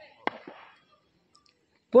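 A single sharp click about a quarter second in, with a fainter one just after, then near silence.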